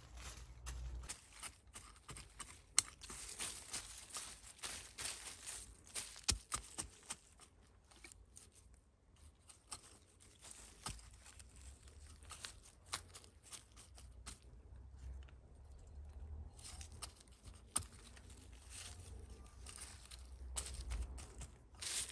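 Close, irregular scraping, crunching and rustling of fingers and a small hand cultivator working dry, leaf-strewn garden soil while planting stem cuttings, with a few sharper clicks.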